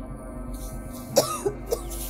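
A woman coughing in three quick bursts about a second in, the first the loudest, set off by the dust her broom is raising; background music plays underneath.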